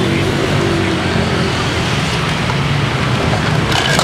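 Steady street traffic noise, with the hum of motorbike and car engines passing. A short clatter near the end.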